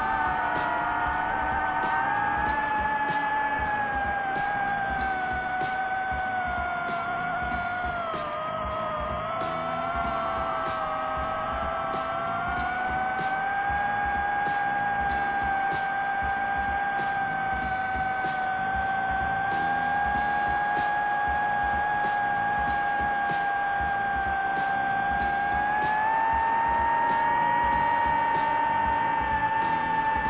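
DJI FPV drone's motors and propellers whining steadily in flight, the pitch dipping about eight seconds in and rising again near the end as the throttle changes, with background music.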